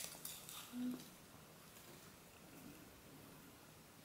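Near silence: quiet room tone, with a few faint ticks and one short faint tone within the first second.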